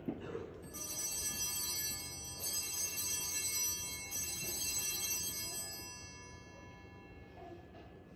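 Altar bells rung during the mass: a bright, many-toned ringing that starts about a second in, is struck again a couple of times, and fades out over several seconds.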